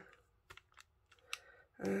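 A few light clicks and taps of stiff plastic, a clear stamp packet handled against a plastic stencil. The sharpest click comes just after a second in, and a voice begins near the end.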